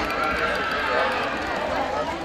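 Several voices singing long, held lines of a Magar Kaura folk song, with no drumbeats.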